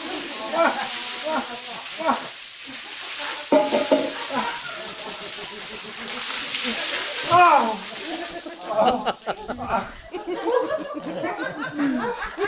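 Buckets of ice water poured over a seated man's head, splashing down onto him and the floor. It is a steady rush of water, with a second, louder pour about six seconds in, and voices shouting and yelping over it.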